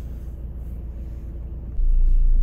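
Steady low rumble in a car's cabin, with no distinct clicks or knocks; near the end it suddenly gets much louder.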